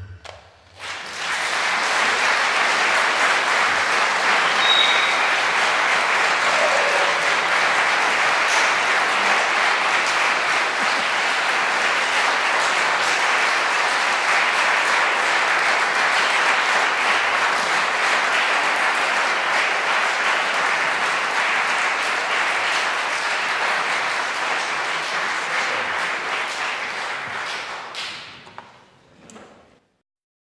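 Concert audience applauding: the applause swells up about a second in, holds steady, and fades out near the end.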